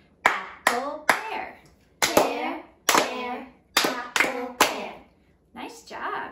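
Hand claps in short groups, one clap on each chanted word: a woman calls out a fruit-name pattern like "pear, pear, apple, pear" and children echo it back.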